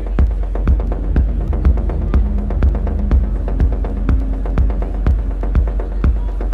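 Techno in a DJ mix: a steady four-on-the-floor kick drum about twice a second over a continuous deep bass line and held synth tones.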